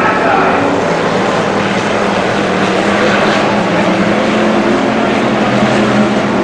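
A pack of IMCA Hobby Stock race cars running their V8 engines at racing speed, blending into one loud, steady drone.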